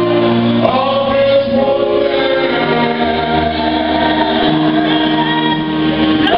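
Gospel song: a man sings into a microphone with a choir, the voices holding long notes over instrumental backing, amplified through the church loudspeakers.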